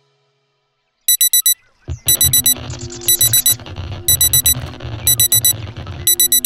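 Digital alarm clock beeping in groups of four quick, high beeps, about one group a second, starting about a second in. A rougher noise sits underneath from about two seconds in.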